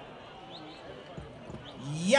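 Quiet lull with faint murmuring voices, broken by two soft low thumps a little after a second in; a louder voice or note starts right at the end.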